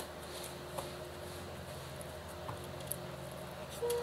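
Quiet room with a steady low hum and a few faint clicks from a boxed deck of cards being handled.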